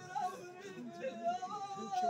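A solo voice singing in a wavering, ornamented line, the pitch sliding up and down, then rising near the end into a held note.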